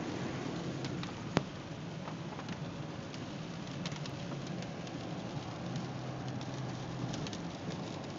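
Steady engine and tyre noise heard inside a moving car's cabin, with scattered light ticks of rain on the car and one sharper click about a second and a half in.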